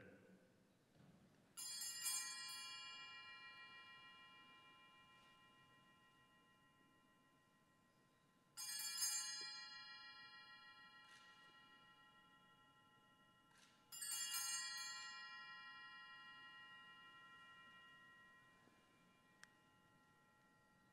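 An altar bell struck three times, about six seconds apart, each stroke ringing with several high tones and fading slowly. It signals the elevation of the chalice at the consecration of the Mass.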